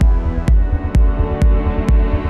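Melodic techno track: a steady four-on-the-floor kick drum about twice a second under a deep, throbbing bassline and sustained synth chords.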